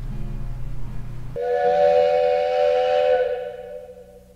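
Edited-in sound effect: a held chord of several steady tones that starts about a second and a half in, lasts a couple of seconds and fades away. A low music bed plays before it starts.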